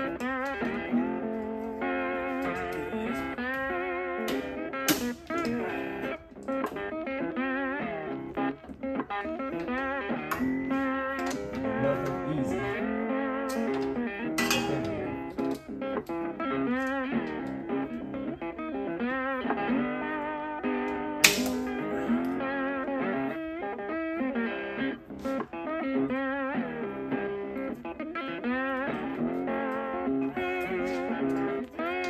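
Background music: a bluesy guitar tune with wavering, slide-like notes. A few sharp clicks cut through it, the loudest about two-thirds of the way in.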